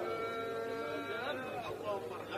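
Men's voices calling out faintly, much quieter than the recitation around them, as listeners react in a pause of a live Quran recitation. A steady held voice tone carries through about the first second.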